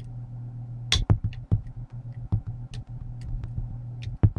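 Irregular light clicks and knocks of picking tools working in a Union 2101 five-lever mortice lock, the strongest about a second in, over a steady low hum.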